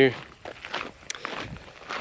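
Footsteps on a gravel road, a few soft irregular steps of people walking.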